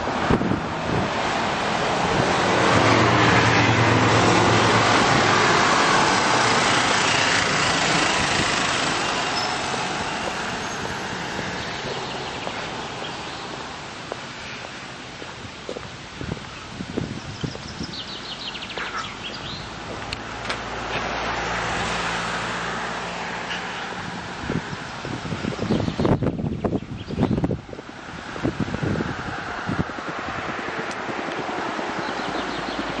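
Road traffic: a car passing close by, its tyre and engine noise swelling over the first few seconds and then fading away, followed later by a quieter vehicle. A cluster of knocks and rustling comes near the end.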